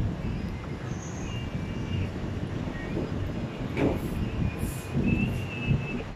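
Outdoor street ambience: a steady low rumble of distant traffic and wind on the phone microphone. Faint thin high tones come and go, with a brief sharper sound about four seconds in.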